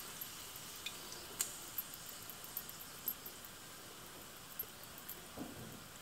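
Faint sizzle of a thin film of oil heating in a hot nonstick frying pan, with scattered small ticks and crackles.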